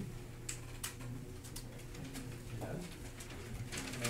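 Room tone: a steady low hum with a scattered run of small sharp clicks and faint low murmuring.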